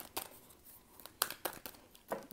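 Tarot deck being shuffled by hand: scattered soft clicks and flicks of cards slipping against each other, a few near the start and a cluster from about a second in.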